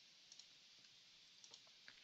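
Near silence with a few faint, short clicks of a computer mouse.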